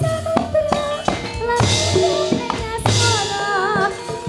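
A woman singing with vibrato into a microphone over a live band, with low drum beats and two cymbal crashes.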